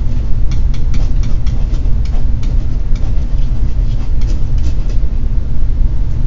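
A steady low rumble that also runs under the narration, with faint light ticks of a stylus writing on a tablet.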